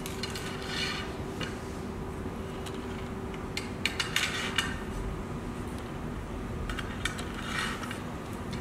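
Aluminium LED profile sections being handled and fitted together for joining, with light metallic scraping and clinking: short scrapes about a second in, around the middle and near the end.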